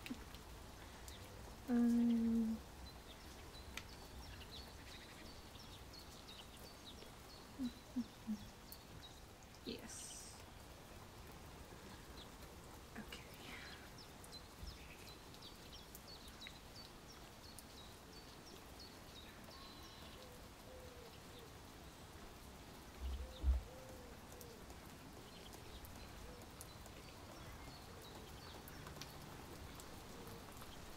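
Quiet background ambience with faint scattered bird chirps. There is a brief vocal sound about two seconds in and a couple of soft low thumps near the end.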